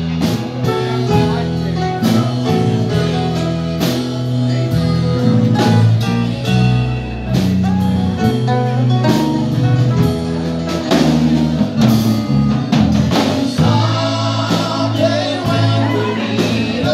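A live country band playing: strummed acoustic guitars, electric guitar and drum kit over a steady beat, with a male voice singing lead.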